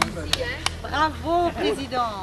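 Two sharp hand claps, then a person's voice rising and falling in pitch, over a faint low hum.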